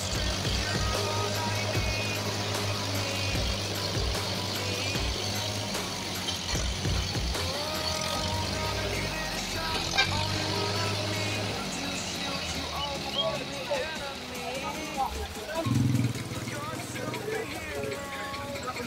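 New Holland tractor's diesel engine running under load as it strains to pull a lorry out of mud, its pitch shifting a few times and surging louder about two seconds before the end, with men's voices calling out as they push.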